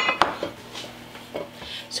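Bread pan handled on the kitchen counter: two sharp clinks with a brief ring right at the start, then faint handling noise.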